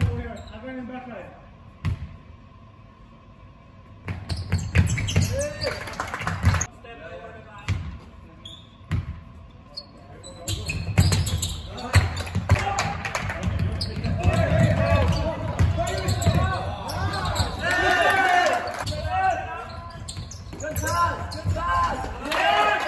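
Basketball bouncing on a hard indoor court floor during a game, in sharp repeated knocks, with players' voices calling out over it. The play and the voices grow busier and louder from about ten seconds in.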